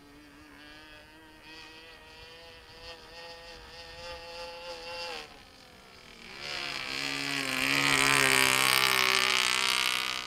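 Radio-controlled model airplane's Evolution two-stroke gasoline engine buzzing in flight. At first it is a distant drone with a gently rising pitch. About five seconds in it drops away, then from about six and a half seconds it swells into a loud close pass that is loudest near the end.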